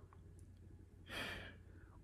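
A man's single audible breath, about half a second long, a little past the middle; the rest is near silence.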